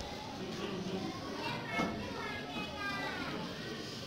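Indistinct voices of several people talking at once, with a higher voice standing out around the middle.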